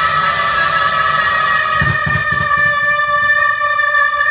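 Instrumental music without singing: several long held notes that sound steadily, with a brief low pulsing in the bass about halfway through.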